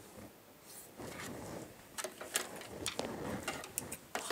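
Pattern paper and a plastic set square being handled on a table: a brief rustle about a second in, then a string of light clicks and knocks.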